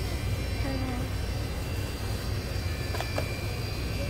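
Steady low mechanical hum of a grocery store's background, with a faint high-pitched whine over it. A light click about three seconds in as a cardboard box of instant coffee is lifted off the shelf.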